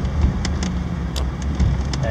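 Steady low in-cabin drone of a 2003 Ford Explorer Sport Trac under way: its 4.0-litre V6 and tyre noise, heard from inside the cab, with a few faint light clicks.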